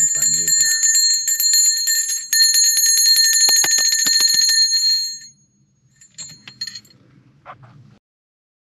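Small brass hand bell shaken rapidly, ringing continuously for about five seconds with a brief break just past two seconds in, then stopping.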